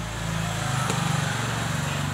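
A motor vehicle's engine running close by, swelling to its loudest a little past the middle and then fading away, as a vehicle going past does. A single sharp click about a second in.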